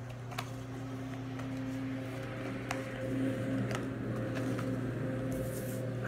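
Tarot cards being handled and shuffled softly, a few faint clicks and rustles over a steady low room hum.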